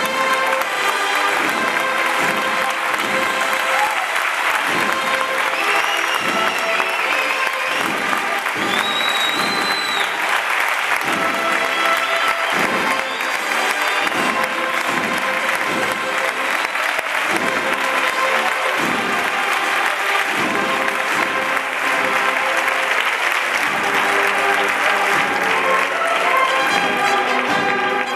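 Large theatre audience applauding loudly and steadily after a march, with a couple of high rising-and-falling whistles. Near the end the cornet and drum band starts playing again.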